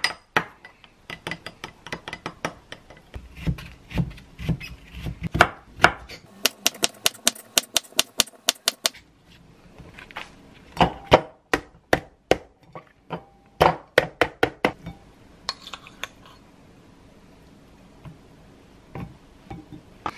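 A metal spoon clinking against a small glass bowl while stirring sauce, then a knife chopping on a cutting board in quick runs of strokes, about six a second, dicing cucumber.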